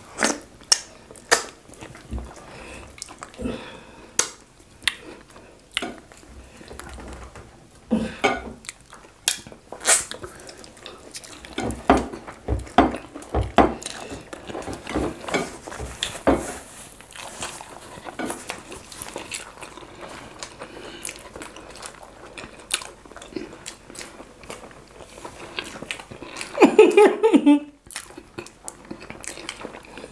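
Close-up eating sounds: chewing, wet lip smacks and finger-licking in irregular sharp clicks, with fingers wiping stew off ceramic plates. A short burst of voice comes near the end.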